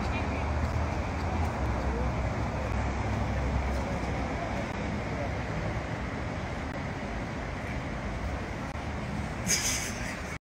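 Outdoor city street noise: a steady rumble of traffic, with a low engine hum for the first few seconds, under indistinct background voices. A brief sharp rustle near the end.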